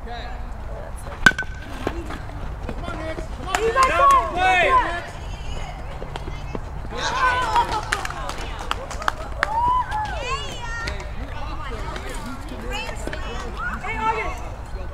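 Voices of players and spectators calling out at a youth baseball game, too distant to make out, over steady outdoor background noise, with a single sharp crack a little over a second in.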